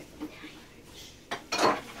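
Kitchen utensils clattering: a sharp click, then a short rattle of cutlery against dishes about a second and a half in.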